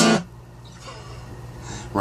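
Acoustic guitar's final strummed chord, cut off sharply a moment after the start, leaving a faint steady low hum.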